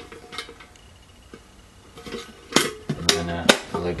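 Metal military mess kit being handled after its lid is pressed shut: a few light taps, then three sharp metal clanks about half a second apart as the closed kit is turned and its handle swings down.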